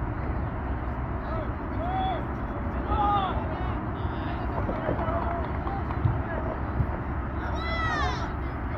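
Short shouts and calls from players and onlookers at an outdoor soccer match, the loudest a single rising-and-falling shout near the end, over a steady low rumble.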